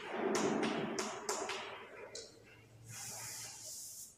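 Chalk on a chalkboard: a quick series of short tapping, scratching strokes in the first second and a half, then a longer, higher-pitched scrape from about three seconds in.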